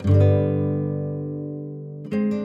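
Background music: a chord on a plucked string instrument is struck at the start and left to ring, fading slowly.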